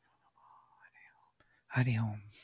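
Faint whispered voices, then near the end a man's voice loudly says "Hari".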